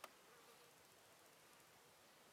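Near silence with a low hiss: a single sharp click right at the start, then a faint insect buzz lasting about half a second.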